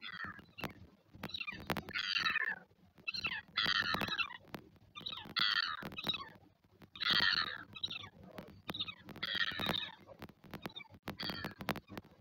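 Northern royal albatross chick giving high-pitched squeaky begging calls in a regular series, a short burst roughly every one and a half to two seconds, with scattered sharp clicks between them.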